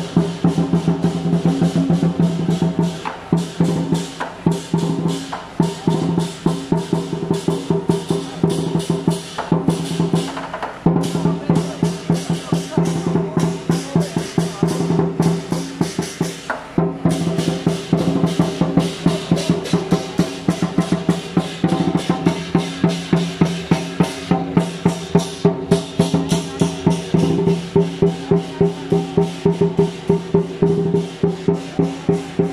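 Lion dance percussion band playing: a big drum beaten in fast, driving rolls with clashing cymbals, breaking off briefly twice and settling into an even, spaced beat near the end.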